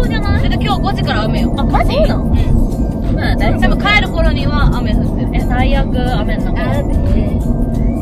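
Steady road and engine noise inside the cabin of a Subaru BRZ being driven, under women's voices and background music.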